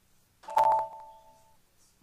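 A single computer notification chime sounds about half a second in, a ding of a few tones together that rings out over about a second. It goes with the software's confirmation that the workflow definition was saved and activated successfully.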